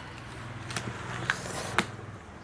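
Scissors snipping at packing tape and cardboard on a box: three sharp clicks about half a second apart, the last the loudest, over a low steady hum.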